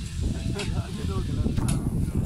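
Faint talk among a group of people over a steady low rumble, with a couple of short soft clicks.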